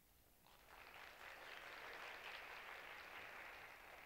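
Near silence, then audience applause starts about half a second in and carries on, faint.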